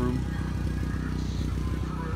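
Gasoline generator engine running steadily in the background, a low, even drone.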